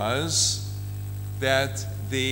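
Steady low electrical mains hum from the microphone and sound system, filling the pause between short snatches of speech.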